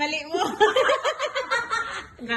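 A person laughing and chuckling, with some voiced sounds mixed in.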